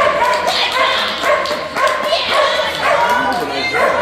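A dog barking over and over, about two barks a second.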